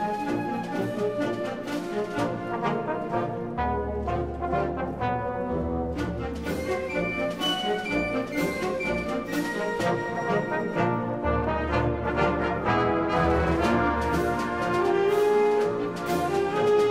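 Brass-led music, trumpets and trombones playing held and moving notes over drum hits and a low bass line.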